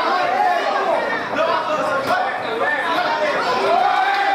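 Crowd of fight spectators shouting and chattering, many voices overlapping in a large hall.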